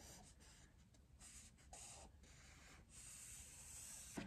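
Felt-tip pen faintly scratching across paper in short strokes as it draws a line.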